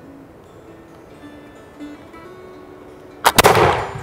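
A Pedersoli Brown Bess flintlock smoothbore musket fires a single shot about three seconds in, loaded with a round ball on 200 grains of black powder and a paper wad on top. The report is sharp and dies away over about half a second.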